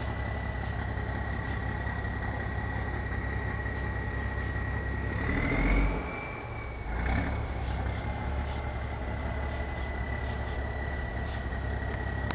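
Sultana bus's diesel engine idling with a steady high whine over a low hum, briefly revved about halfway through before settling back to idle.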